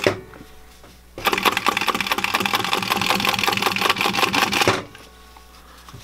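Singer 111W101 industrial walking-foot sewing machine, run by a servo motor, stitching through denim at its tightest setting of 32 stitches per inch: a fast run of clicks starting about a second in and stopping at about five seconds. The owner thinks the stitch is too tight for the thick thread and got the machine stuck.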